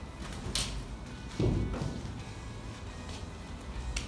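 A single dull thump about a second and a half in, with a light click shortly before it, over faint background music.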